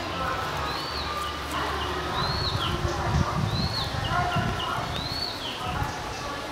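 A bird repeating a short high call that rises and falls, about once every second and a half, over low thuds and faint distant voices.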